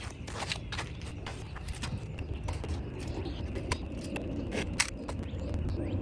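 Plastic magnetic building tiles clicking and clacking as a stack of them is handled, with irregular light taps throughout, over a low steady rumble.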